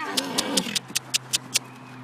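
A horse's whinny ending in a falling, wavering tail, with a quick run of about seven sharp clicks during the first second and a half.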